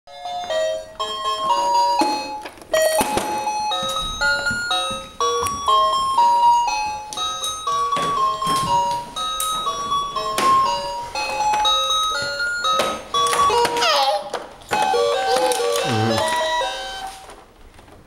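Electronic baby activity table playing a simple beeping melody, one clear tone after another, with sharp knocks as its buttons are pressed and hit. Babies' voices rise and fall near the end.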